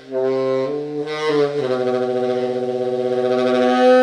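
Cannonball tenor saxophone played in an improvised solo: a few short notes to open, then from about one and a half seconds in a long held note with vibrato that swells near the end.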